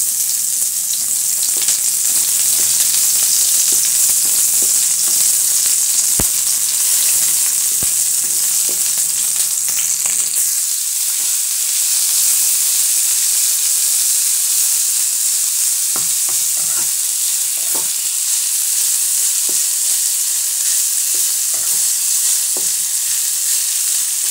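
Hot oil sizzling steadily in a wok as onion, garlic and then julienned carrots are stir-fried. A spatula clicks and scrapes against the pan now and then.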